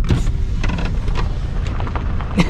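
Car driving over a broken, cracked road surface: a steady rumble of tyres and body, with many small irregular knocks and rattles.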